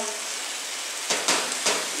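Chicken pieces sizzling as they sear in hot oil in a stainless steel pot, the meat well drained so it fries rather than stews. A wooden spoon stirs and knocks against the pot a few times from about a second in.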